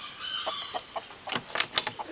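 Chickens clucking with short, repeated calls, followed by a few sharp clicks near the end.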